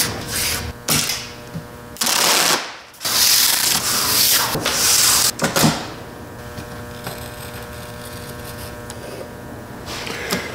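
Auger bit boring through a maple board, a rasping cutting noise in several long bursts over the first half. It gives way to a quieter stretch of a chisel paring the edge of the drilled hole, with a faint steady hum underneath.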